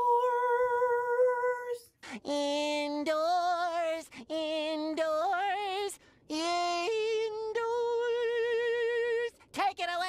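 Singing: a woman holds one long sung note, then a cartoon character's singing voice carries on in a run of long, wavering notes that step between pitches, broken by short gaps.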